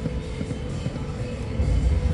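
Video slot machine's game music and reel-spin sounds as the reels spin and land, over a low, steady background din that grows louder near the end.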